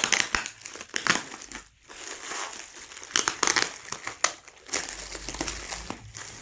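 Bubble wrap and a plastic bag crinkling and rustling in uneven spurts as hands unwrap a parcel.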